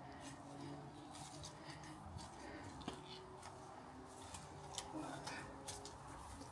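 A garden fork working into soil and roots, faint: a scatter of small scrapes, ticks and cracks.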